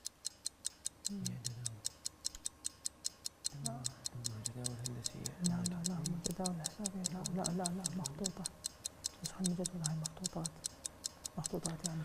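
A quiz-show countdown timer ticking with fast, even ticks while the contestants confer in low voices.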